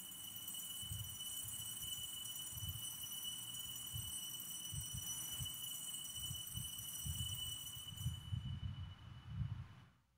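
A consecration bell rung at the elevation of the host. Its steady high tones ring on and fade out about eight seconds in, over irregular low, muffled thumps.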